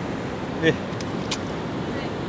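Steady background noise of road traffic, with a brief vocal sound about two-thirds of a second in and two faint clicks soon after.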